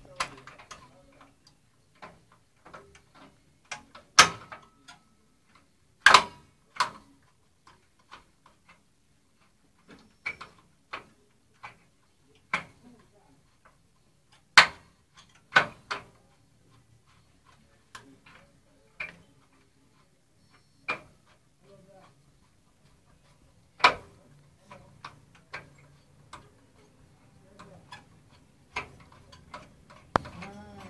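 Irregular sharp clicks and knocks, as of hard objects being handled or set down, a few dozen at uneven spacing with several much louder than the rest.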